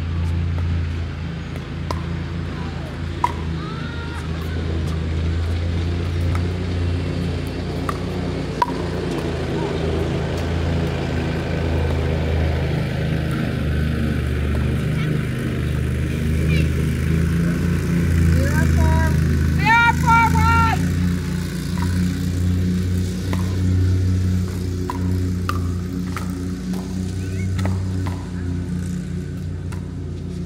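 Pickleball paddles popping against the plastic ball during a rally, a few sharp clicks, clearest about three and nine seconds in, over a loud steady low rumble.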